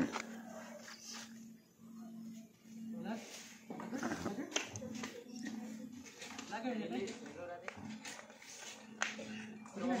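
Faint voices of a small group of child carol singers, with a few sharp taps on a drum.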